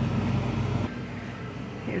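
Wire shopping cart rolling with a steady low rumble, which stops abruptly about a second in.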